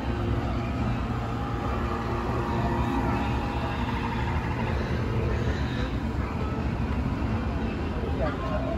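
Steady low rumble of the dark ride's ambience as the boat drifts, with faint voices in the background.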